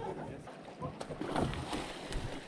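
Water splashing and sloshing around kayaks and a paddle in shallow river water, louder in the second half, with faint voices.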